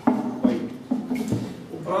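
A man's voice in about four short, clipped syllables, roughly half a second apart.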